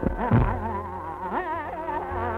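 Old, narrow-band recording of Hindustani classical music: a melody line in fast, shaking ornaments, sliding up in pitch about one and a half seconds in, over a steady drone.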